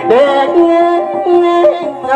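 Singing in a song: the voice slides up into a long held note, then bends the pitch near the end.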